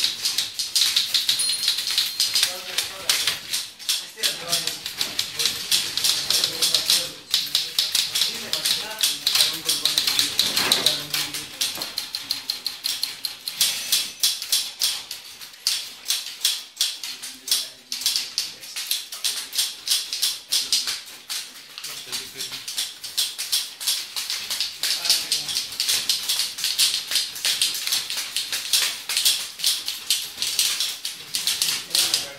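Several manual typewriters being typed on at once: a fast, continuous clatter of overlapping keystrikes.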